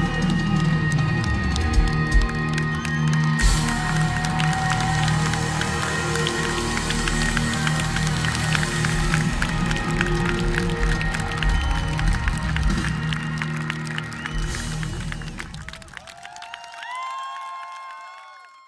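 Live rock band playing with electric guitars, loud and dense, then thinning out and ending about three-quarters of the way in. In the last seconds the audience starts cheering, with a few rising yells.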